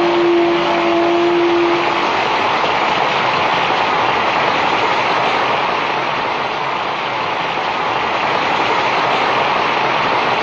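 The last held chord of the song fades out within the first two seconds. Under it and after it comes a loud, steady rushing noise, like hiss or a wash of applause.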